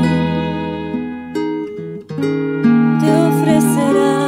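Music led by a strummed acoustic guitar. It thins out and dips in level about halfway through, then comes back fuller.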